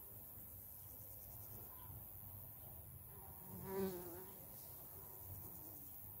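A flying insect buzzing past close by: a hum that swells up about three and a half seconds in, wavers up and down in pitch, and fades out after less than a second, over a faint steady background.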